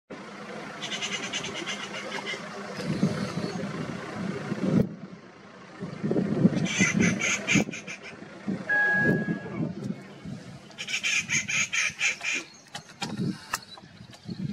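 Birds calling in three bursts of rapid chattering notes, with a short whistled tone between them, over indistinct low voices.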